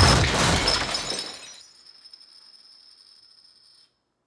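A wooden table breaking with a loud crash, with glass shattering and things on it clattering. The crash fades over about a second and a half, leaving a faint high ringing that cuts off just before the end.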